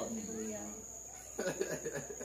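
A pause in a man's speech: his voice trails off at the start, and a brief vocal sound comes about one and a half seconds in. A faint, steady high-pitched tone runs underneath throughout.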